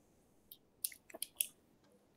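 A few faint short clicks close to a microphone, clustered between about half a second and a second and a half in, over a near-silent background.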